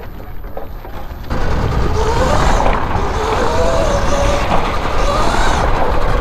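Sur Ron 72-volt electric motor in a converted go-kart whining under hard acceleration, its pitch wavering and rising, over a heavy rush of wind and tyre noise. The sound jumps much louder about a second in.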